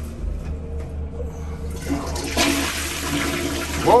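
Toilet flushing: a low knock near the start, then the rush of water into the bowl building from about two seconds in. A pretty strong flush.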